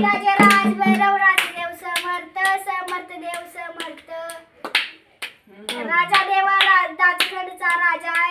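Voices singing a devotional song, with hand claps keeping time. A small rope-laced hand drum is still being played at the start and stops about a second in. The singing breaks off briefly about five seconds in, then starts again.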